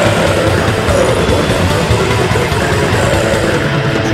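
Death metal: a down-tuned Schecter Omen electric guitar playing heavy distorted riffs over fast drumming, with growled vocals.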